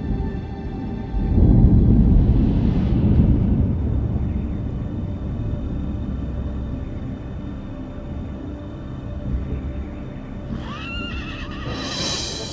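Movie soundtrack: brooding music with a deep rumble that swells about a second in and slowly fades, then a horse neighing, a wavering rise-and-fall call, near the end.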